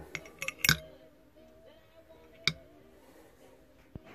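Metal parts of a VW Transporter T4 brake master cylinder clinking as the spring and piston are pushed back into the bore: a quick cluster of sharp clicks in the first second, then single clicks about two and a half seconds in and near the end. Faint background music plays underneath.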